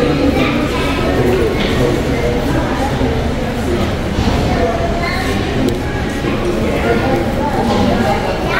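People talking, indistinct, in a large indoor hall.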